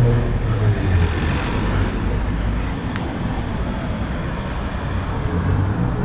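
Road traffic on a town street: a vehicle goes by in the first second, its engine note dropping as it passes, then a steady traffic rumble.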